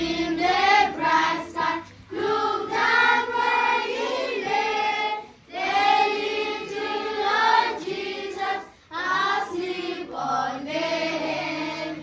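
A group of children singing together in sung phrases, with brief breaks between lines about every three seconds.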